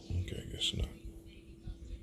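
A man muttering a short, half-whispered word under his breath, less than a second long, over a faint steady hum.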